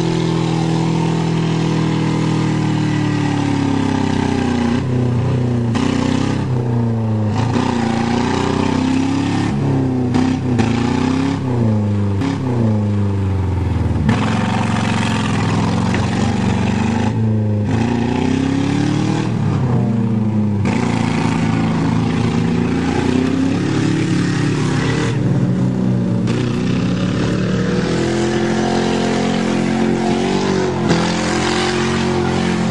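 Engines of two demolition-derby cars, a Buick and a Saturn, revving hard and unevenly, their pitch rising and falling again and again as the cars shove against each other.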